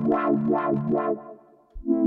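Akai JURA software synthesizer playing its 'Wobbley Pad' preset: a sustained chord pulsing about five times a second fades out about a second and a half in, and a new chord starts just before the end.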